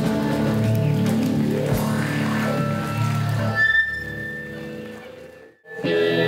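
Live rock band playing without vocals: electric guitars, bass and drums with sustained chords. Over the last two seconds the music fades to a brief silence, then guitar-led music starts again right at the end.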